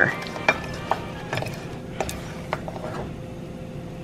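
Long wooden spoon stirring and scraping partly melted sugar around a stainless steel saucepan, with a few irregular clicks as it knocks the pan, while the sugar cooks down to caramel.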